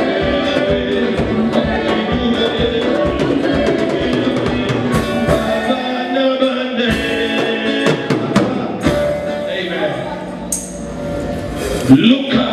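Live gospel worship music: a man singing lead into a microphone over a band with drums and a choir. The steady drum beat drops away about halfway through and the music thins out near the end.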